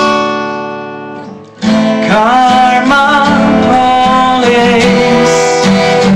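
Acoustic guitar: a strummed chord rings out and fades for about a second and a half, then the strumming starts again and carries on steadily.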